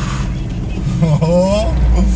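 Steady engine and road noise inside a moving BMW E36's cabin, with a deep rumble that grows stronger near the end.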